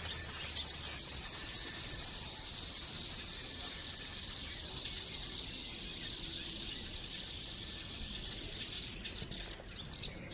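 Fishing line hissing off the spool of a big pit spinning reel during a long-range cast. The high hiss is loud at first, then slowly drops in pitch and fades over about five seconds as the line slows.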